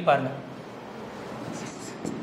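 Marker pen writing on a whiteboard: a few faint, short strokes starting about one and a half seconds in.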